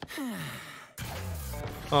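A cartoon character's sigh, one falling breathy voice, in the first second. From about a second in it gives way to a low, steady sound from the cartoon's soundtrack.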